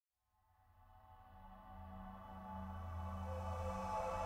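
Ambient electronic song intro: a held synthesizer chord over a low bass drone, fading in from silence and slowly swelling, with no beat yet.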